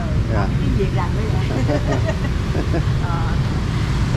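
Steady low rumble of city street traffic, with faint snatches of talk over it.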